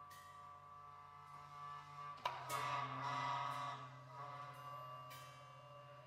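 Contemporary spectral chamber music from a mixed ensemble of winds, brass, strings and percussion around a solo horn: soft held chords, broken about two seconds in by a sudden accented attack that swells into a louder, brighter chord for a couple of seconds before easing back, with struck, ringing percussion accents near the start and end.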